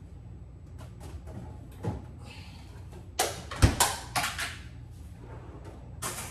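Kitchen handling noise at a refrigerator: a few light knocks and clicks, then a cluster of sharp clatters with a dull thump about three seconds in, as items are taken out and the fridge door is shut.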